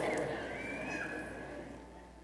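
Congregation in a large church laughing at a joke, the laughter fading away.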